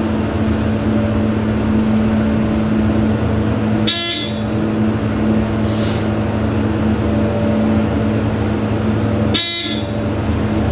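ThyssenKrupp passenger elevator running as the car rises, a steady hum from its drive. Two brief noisy bursts come about 4 and 9.5 seconds in.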